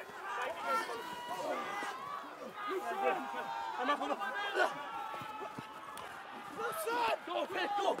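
Rugby players' voices shouting over one another during a close-range ruck by the try line, with calls of "go" around it.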